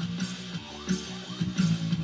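Electric bass guitar played along to a drum-and-bass track with a driving beat. The bass sits thin in the recording, its lowest notes barely picked up.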